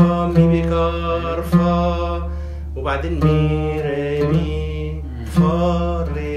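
A man singing long held notes of an Arabic song melody, accompanied by oud strokes and a Yamaha keyboard holding a steady low bass underneath.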